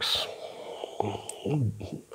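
A man's soft, breathy hesitation sounds: a quick breath at the start, then a short, low, half-voiced murmur about one and a half seconds in.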